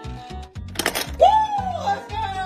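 Background music with a steady beat, cut by a short burst of static-like noise about a second in. Then a baby starts to cry: a pitched wail that rises and slowly falls.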